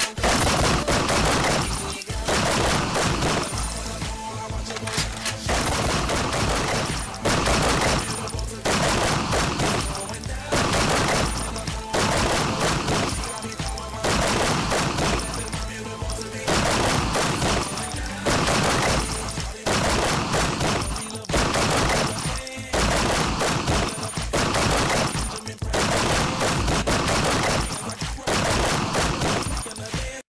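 Rapid automatic gunfire from an action-film soundtrack, running in long bursts with short breaks, over music.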